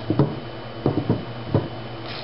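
A few light knocks and clicks of CPVC pipe fittings and the cement applicator being handled on a tabletop, four short taps spread over two seconds.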